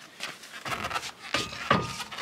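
A quick run of short scuffs from leather-gloved hands gripping and rubbing a car's rear tire, checking whether the wheel turns with the car in gear.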